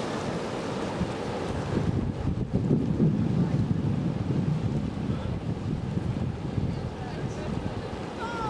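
Wind buffeting the microphone, in gusts that are strongest about two to five seconds in, over a steady wash of surf and shallow river water flowing into the sea.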